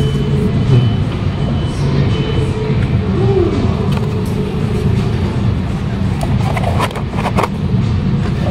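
Busy station food-hall ambience: a steady low rumble with faint background music and distant voices, and a few sharp clicks near the end.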